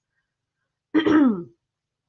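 A woman clears her throat once, about a second in: a short, voiced rasp that falls in pitch.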